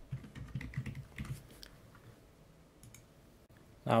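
Faint computer keyboard keystrokes and clicks, mostly in the first couple of seconds, then sparse.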